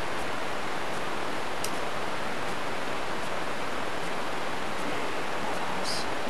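Steady, even hiss of recording noise from a low-quality microphone, with a couple of faint clicks: one about a second and a half in, one near the end.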